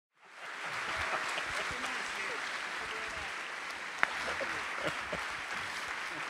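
Audience applauding steadily, fading in just after the start, with faint voices beneath it and one sharp click about four seconds in.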